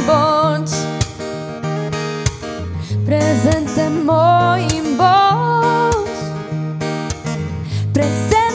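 A woman singing a slow song over acoustic guitar accompaniment, in two phrases with held, wavering notes.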